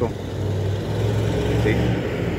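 Steady road traffic: a low, even rumble of car engines and tyres.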